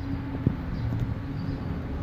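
Phone microphone handling noise as the phone is set up by hand: rubbing and rumble with one sharp tap about half a second in, over a steady low hum.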